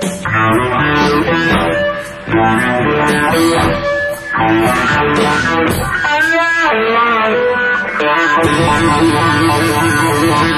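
Live blues-rock trio playing: electric guitar lead lines over bass guitar, with a wavering bent note about six seconds in.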